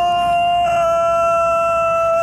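A kendoka's kiai: one long, loud shout held at a steady pitch without a break.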